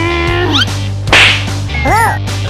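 Background music with a steady bass line and sliding pitched tones, cut about a second in by a sharp whip-like crack, the loudest sound. A short pitched swoop that rises and falls comes near the end.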